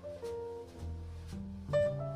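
Jazz piano trio playing: single notes on a Shigeru Kawai grand piano ring and fade over plucked double bass notes, with light cymbal strokes keeping time about twice a second.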